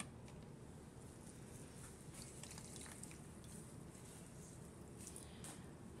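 Near silence: room tone, with a few faint soft handling noises from a sponge and plastic tubs.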